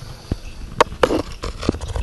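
Small plastic paint containers being handled and knocked together in a face-paint case: a few light clicks and knocks, clustered about a second in, over faint rustling.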